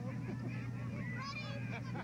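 Cheerleaders shouting a cheer together, high voices calling out long, falling syllables that grow stronger about a second in, over a steady low hum on the recording.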